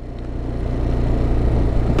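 Small single-cylinder engine of a Chinese-built Honda XR125-replica supermoto running at low speed under the rider, steadily and getting gradually louder.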